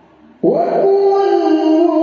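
A male reciter begins chanting the Qur'an in the melodic tilawah style about half a second in, holding one long sung note whose pitch wavers slightly.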